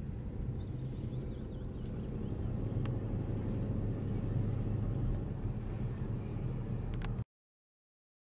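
Car engine and road noise heard from inside the cabin while driving, a steady low drone that swells a little midway, then cuts off suddenly about seven seconds in.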